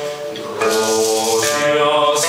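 Choir singing a medieval folk song, holding long notes; a new phrase begins about half a second in, with a shaker-like rattle playing along.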